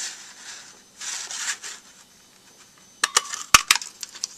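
Paper rustling as a sheet is slid into place, then a Stampin' Up! Modern Label craft punch is pressed down and clacks as it cuts through the patterned paper: a quick cluster of sharp clicks near the end, the loudest a solid snap about three and a half seconds in.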